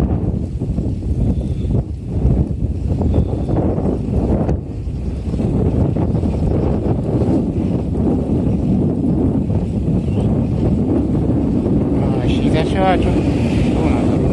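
Wind buffeting the microphone of a camera carried on a moving bicycle: a steady, loud low rumble. A short wavering high tone sounds briefly near the end.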